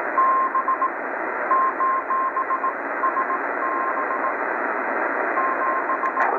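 Shortwave static hissing from a Tecsun PL-880 receiver in lower-sideband mode, with a single steady tone keyed on and off in short and long dashes like Morse code, in several groups.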